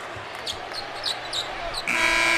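Arena crowd noise with several short, sharp sneaker squeaks on the hardwood court as players move. Near the end the end-of-quarter horn starts: a loud, steady buzz with many overtones.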